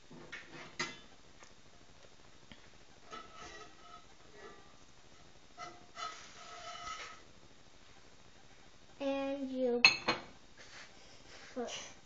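Spatula clinking and scraping against a cast-iron skillet a few times, some strokes leaving a brief metallic ring, with one sharp, louder knock near the end.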